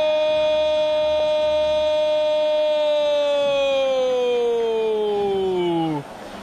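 A Brazilian football narrator's drawn-out goal call, 'Goool!', held as one unbroken shouted note for about six seconds. It stays level at first, then sinks steadily in pitch over the last few seconds and cuts off at the end.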